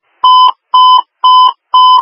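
Radio dispatch alert tone heard over a scanner: a run of steady, single-pitched electronic beeps, about two a second, each about a third of a second long. It signals the attention tone ahead of a dispatcher's announcement.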